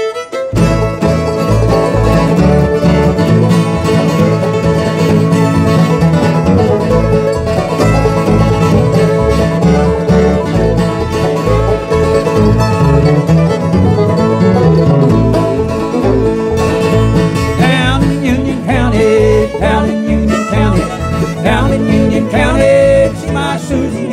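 Bluegrass band playing an instrumental intro on acoustic guitar, mandolin, fiddle and upright bass, the bass keeping a steady beat. A wavering fiddle line comes forward in the last several seconds.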